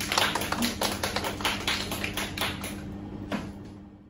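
Applause from a small audience: a few people clapping in quick, uneven claps, dying away about three and a half seconds in, with a steady low hum underneath.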